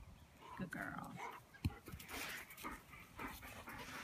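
Dog panting in short, irregular breathy puffs while holding a rubber ball in its mouth, with a single short click about a second and a half in.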